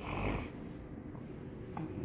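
A short exhale close to the microphone, lasting about half a second, then a low steady background hum.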